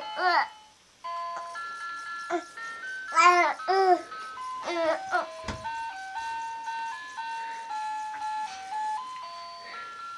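Crib mobile playing a simple electronic lullaby, one clear note at a time, pausing briefly before it restarts about a second in. Over it a baby coos and babbles a few times, loudest about three seconds in.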